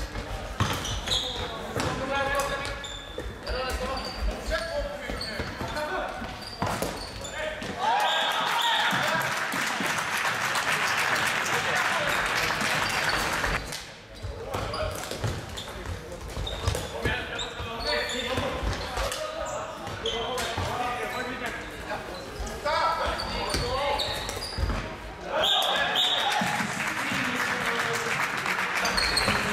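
Floorball game in an indoor sports hall: players shouting, with the clack of sticks and the plastic ball on the hard floor. Two spells of loud cheering and shouting, one starting about eight seconds in and one near the end, after a goal.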